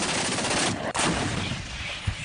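Sustained automatic gunfire, a dense continuous stretch of shots with a brief break about a second in, easing off toward the end.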